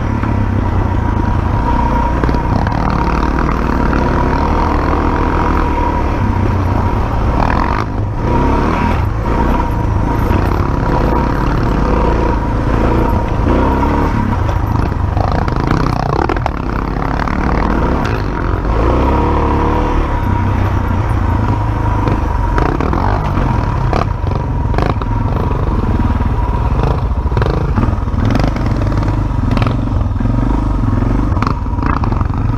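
On-board sound of a dirt bike being ridden along a rough, rutted forest trail: its engine running continuously as the throttle varies, with the bike clattering and knocking over ruts and stones.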